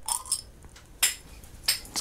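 Crown cap being prised off a glass beer bottle with a stainless-steel lighter-case bottle opener. A few small clicks come first, then a sharp metallic clink with a brief ring about a second in, and a lighter clink near the end.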